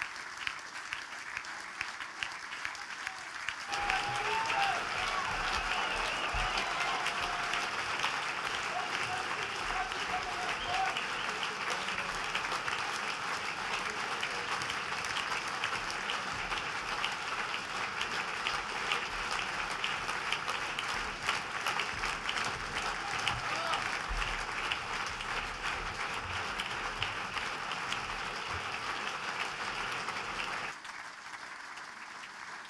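A large crowd applauding steadily as an ovation for a speaker who has just finished. The clapping gets noticeably louder about four seconds in, with a few voices calling out above it.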